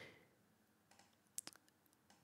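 Near silence, with a quick pair of faint clicks about a second and a half in: a computer mouse clicking.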